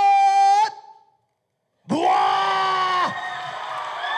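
A loud held yell breaks off, then comes about a second of complete silence, then a second long yell. Mixed shouting follows near the end as a crowd of dancers cheers.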